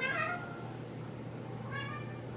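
Domestic cat meowing twice: a drawn-out meow that falls in pitch right at the start, then a short meow near the end.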